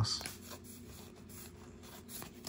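Faint rustle of trading cards sliding and rubbing against each other as a small stack is handled and fanned out in the hands.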